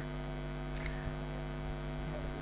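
Steady electrical mains hum, a low buzz with many overtones, with one brief faint tick just before the middle.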